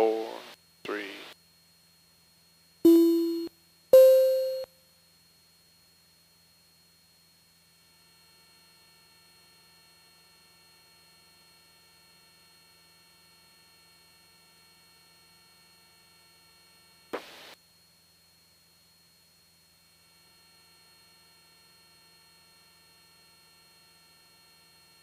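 Two-note electronic alert chime from the aircraft's avionics, heard over the headset intercom: a lower tone about three seconds in, then a higher one a second later, each short and fading. It comes as the countdown to the next approach leg runs out, marking the leg sequence. Then faint intercom hiss with one short burst of noise.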